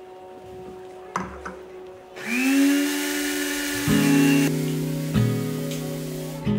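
A small motor whirs, rising in pitch and then holding steady with a hiss for about two seconds. Acoustic guitar music then starts, with plucked notes a little over a second apart.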